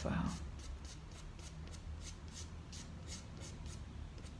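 Soft pastel stick dragged on its side across sanded pastel paper in quick, even strokes, about four a second, laying in dark shading. Faint and scratchy.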